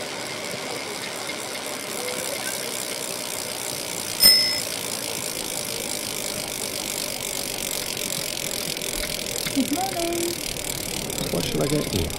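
Outdoor street ambience with a steady background hiss. A single bicycle bell rings about four seconds in, the loudest sound, and dies away within half a second. A few brief snatches of passers-by's voices come near the end.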